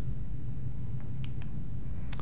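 A pause in speech: a steady low hum of room background noise, with a few faint ticks about a second in.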